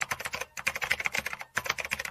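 Keyboard-typing sound effect: a fast run of clicks that breaks off for a moment about one and a half seconds in, then resumes.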